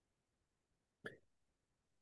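Near silence, with one short, faint sound about a second in.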